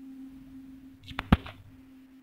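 A steady low hum, with two sharp clicks close together a little over a second in, the second louder.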